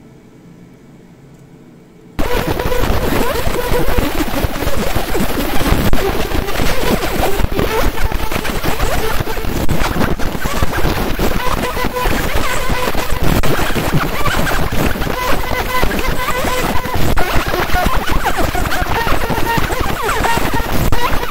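A 50 W JPT fiber laser marker ablating a fired clay shard over repeated fast passes. A loud, dense crackling hiss starts abruptly about two seconds in and runs on steadily, with faint steady tones underneath.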